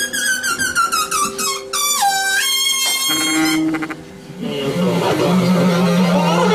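Free-improvised music: pitched wind-like lines slide and step in pitch, the sound drops away briefly about four seconds in, then a noisier, busier texture comes in over a low pulsing tone.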